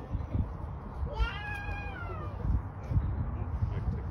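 A single high-pitched, drawn-out cry a little over a second in, falling slowly in pitch over about a second, heard over a low, uneven rumble.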